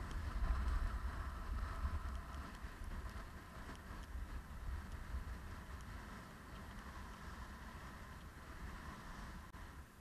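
Wind rumbling on the camera microphone over a steady hiss of skis sliding on snow, loudest in the first three seconds.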